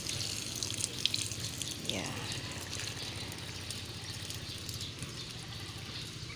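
Water poured by hand from a plastic scoop, splashing and pattering onto the leaves of a plant and the bare soil around it.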